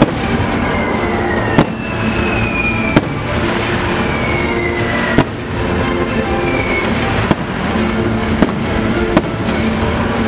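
Aerial fireworks shells bursting with several sharp bangs over a loud orchestral show soundtrack.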